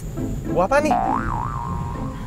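Cartoon-style comedy sound effects over background music: a quick rising boing about half a second in, followed by a wavering, warbling tone lasting about a second.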